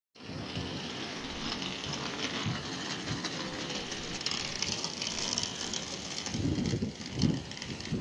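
Outdoor city street ambience: a steady hiss of distant traffic, with a few low rumbling gusts on the microphone in the last second and a half.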